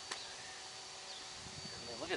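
Quiet, steady outdoor background hiss with a thin, faint high-pitched tone running through it and a soft click just after the start.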